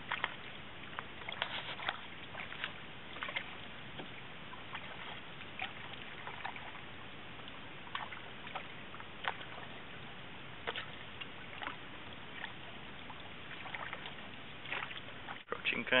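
Canoe paddling on calm water: small irregular splashes and drips from the paddle, a few a second, over a steady hiss.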